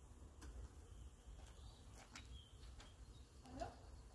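Near silence: a faint low background rumble with a few faint, scattered clicks.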